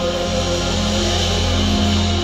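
Live band music: held chords with electric guitar over a steady bass note, no clear singing.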